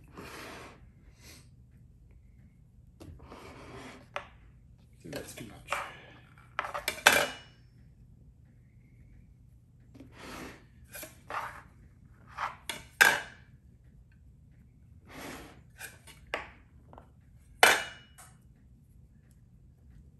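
Glass pie plate being turned and shifted on a table while a crust edge is worked: about a dozen short scrapes and clinks of glass, a few of them sharp and loud.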